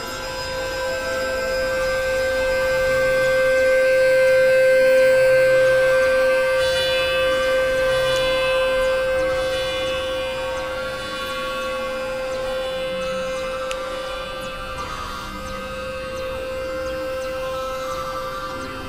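Experimental electronic drone music: one strong held tone with fainter layered tones above it, swelling louder around five seconds in and then easing back.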